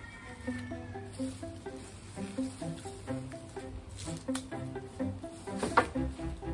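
Background music: a light melody of short, steady notes moving up and down, with two brief knocks about four seconds in and near the end.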